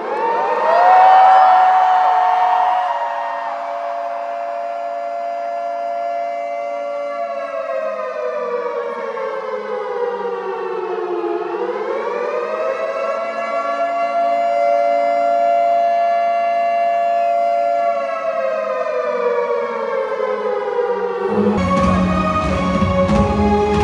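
Air-raid-style siren sound played over a stadium PA as a concert's opening effect: one long wail that rises at the start, holds, sags down and climbs back up around the middle, holds again, then cuts off just before the end.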